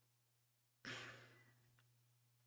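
A man's single short exhale about a second in; otherwise near silence.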